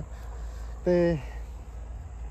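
Crickets chirping steadily at night, a thin continuous high tone, over a low steady rumble.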